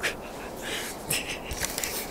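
Irregular rustling and short breathy noises close to the microphone as a handheld camera is moved about.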